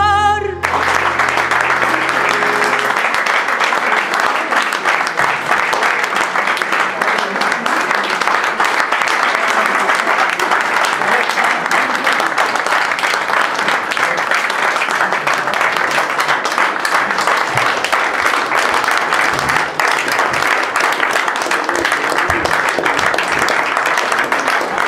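Audience applauding steadily, the dense clapping of a small room full of people, starting as a sung note with vibrato ends about half a second in.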